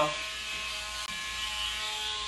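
Electric nail grinder running with a steady whine as it smooths the sharp edges of a dog's clipped nails, softened by bath water.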